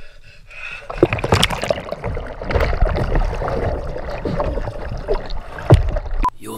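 Swimming-pool water splashing and churning as a man is dunked under, with many sharp slaps of water from about a second in and the loudest splash near the end.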